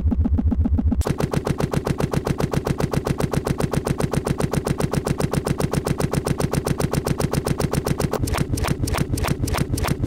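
Electronic soundtrack: about a second in, a low droning synth texture gives way to a rapid, even pulse of clicks across the whole range. Near the end the pulse breaks up with short gaps.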